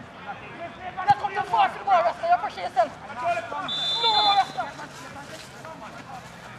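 Voices calling out across a football pitch, with a single short blast of a referee's whistle about four seconds in.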